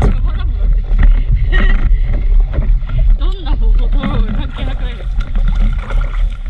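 Water splashing and sloshing against the nose of a moving stand-up paddleboard, close to the microphone, with a heavy low rumble throughout. An indistinct voice is heard at times.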